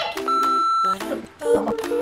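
A single steady electronic beep, one high tone lasting a little over half a second, then light background music with short stepped notes.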